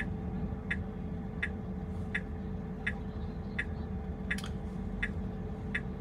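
A car's turn-signal indicator ticking steadily, about one tick every 0.7 seconds, while the car waits at a junction. Under it is a low, steady cabin hum.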